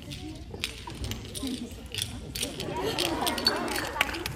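Indistinct chatter of several people talking at once, growing busier in the second half, with a few short sharp clicks scattered through it.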